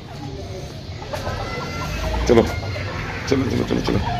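A domestic hen and rooster clucking, with a short call about two seconds in and a cluster of calls near the end.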